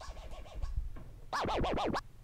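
Record scratching on a djay Pro virtual turntable, a sample dragged back and forth so its pitch swoops up and down. It is softer in the first second, then a louder run of about five quick back-and-forth strokes.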